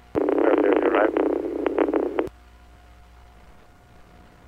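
Police two-way radio transmission: a narrow, tinny burst of garbled, unintelligible radio audio that cuts off abruptly a little over two seconds in. After the cut there is faint radio hiss with a thin steady tone.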